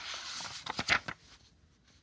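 A paper page of a picture book being turned by hand: a rustling swish lasting about a second, with a few crisp crackles near its end.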